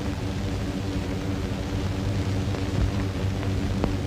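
Low, steady background music drone from the film's soundtrack, with a couple of faint ticks near the end.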